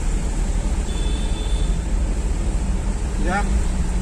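Steady low rumble of a vehicle driving in traffic, heard from inside the cab, with a short voice-like call about three seconds in.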